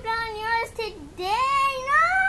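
A young child's high-pitched voice, drawn-out sing-song sounds that slide up and down in pitch, with a short break about a second in before rising again.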